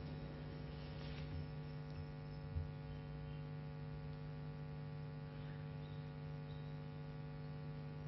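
Steady electrical mains hum from the sound system, with a faint background hiss and one small knock about two and a half seconds in.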